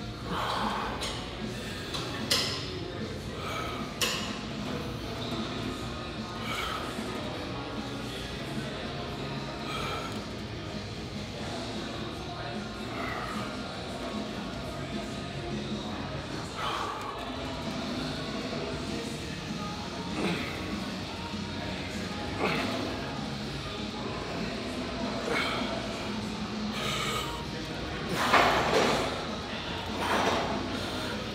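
Music playing over the clatter of weight training in a large room, with a few sharp clinks and thuds of gym weights and a louder burst of noise near the end.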